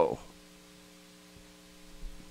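Faint steady electrical hum, a few low steady tones, following the tail of a man's drawn-out "whoa" at the very start.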